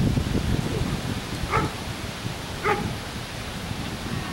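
A dog barks twice, about a second apart, over a steady low rumble of wind on the microphone.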